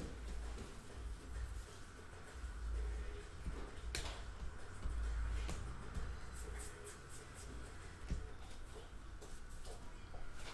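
Baseball trading cards being flipped through and shuffled by hand, with light card clicks and slides. One sharp click comes about four seconds in and a run of small clicks follows near the middle, over a low rumble that swells and fades.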